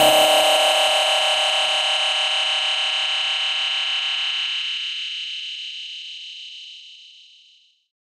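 Closing synthesizer chord of an electro house track, held with no beat under it and fading slowly away over about seven and a half seconds.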